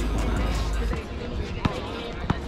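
Background music with a heavy bass that stops about a second in, leaving the open sound of an outdoor asphalt basketball court; a single sharp thud of a basketball bouncing on the asphalt comes shortly after.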